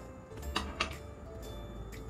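A few light clicks of a spoon against a cup while a tablespoon of sugar is added to water, over faint background music.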